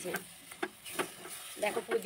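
Spatula knocking and scraping against a steel kadai while stirring a thick sugary chutney cooked down to a jelly-like consistency, with a faint sizzle beneath; about four strokes, roughly two a second.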